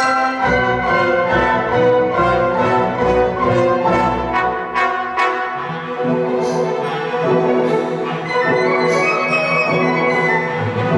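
Symphony orchestra playing a loud passage with brass prominent. The low register is heavy for about the first five seconds, then the texture thins, with a few sharp high strokes.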